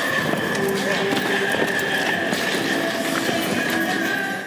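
Dancers' shoes tapping and stomping on a stage floor during a choreography rehearsal, many quick irregular steps, with voices talking underneath.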